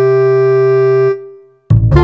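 Background music on an electronic keyboard: a held chord that fades away about a second in, then a brief gap before the music starts again loudly near the end.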